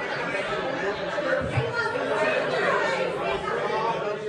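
Many people talking at once in a large room, an unbroken babble of overlapping voices.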